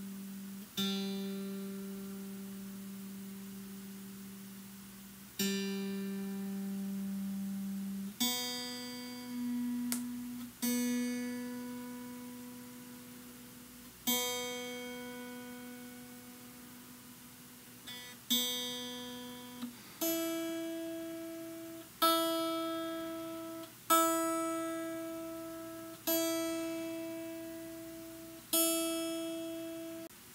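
Fender Stratocaster on its neck pickup, single open strings plucked and left to ring out while being tuned to Peterson's sweetened tuning. The G string is plucked twice. The B string is plucked several times from about eight seconds in. The high E string is plucked five times, about every two seconds, from about twenty seconds in.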